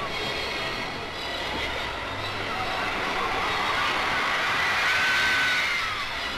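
A large audience of children laughing and cheering, the noise building steadily to a peak near the end.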